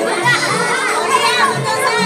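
Children's high voices calling and chattering together over background music with held tones.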